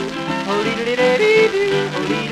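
Male voice yodeling, leaping between short held notes, over a strummed guitar accompaniment, on a 1928 Victor Orthophonic 78 rpm shellac record.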